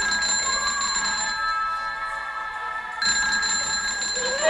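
A telephone ringing in repeated bursts, a new ring starting about three seconds in.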